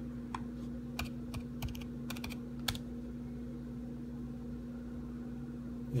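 Typing on a computer keyboard: a quick run of about a dozen keystrokes in the first three seconds, then it stops, over a steady low hum.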